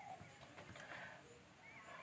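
Near silence: faint room tone with a steady high whine and a couple of faint short chirps.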